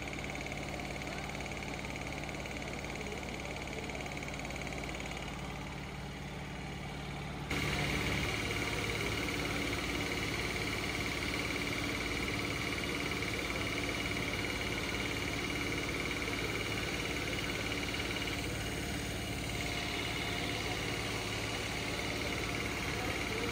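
Steady mechanical hum and noise of workshop machinery, with several constant tones and no clear events. It steps up abruptly and changes tone about seven and a half seconds in.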